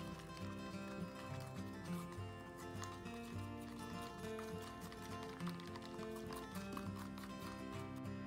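Background music: a mellow tune carried by sustained bass and chord notes that change every second or so, with faint light ticks in the mix.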